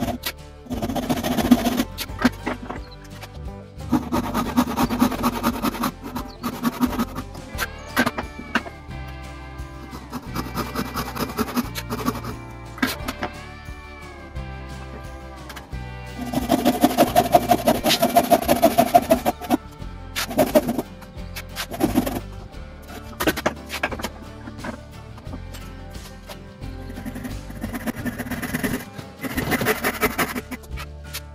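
Background music over a hand saw cutting timber clamped in a vise, the sawing coming in bursts of strokes a second or two long.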